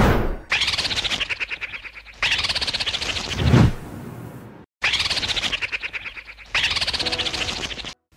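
An edited-in rattling sound effect: four bursts of very fast, even clicking, each about a second and a half long and starting abruptly, with a low swelling sound between the second and third bursts.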